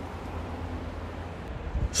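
Steady low rumble of outdoor background noise with a faint hiss, with the start of speech right at the end.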